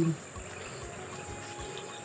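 Insects in the grass trilling steadily at a high pitch, with faint background music under it.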